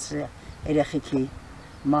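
An elderly woman speaking in short phrases with brief pauses between them.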